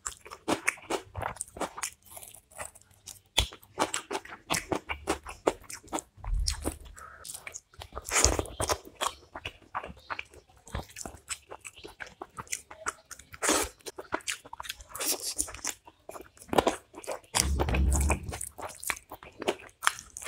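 Close-miked chewing, lip smacking and wet mouth clicks of a person eating chicken roast and rice by hand, in quick irregular bursts. Dull low thumps come about six seconds in and again near the end.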